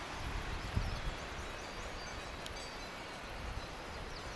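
Steady rushing of a mountain stream in the background, with a few faint high chirps about a second in.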